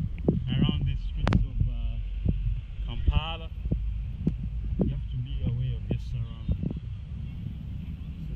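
A heavy low rumble of wind buffeting a moving camera's microphone, with irregular thumps and short bursts of muffled, indistinct voice.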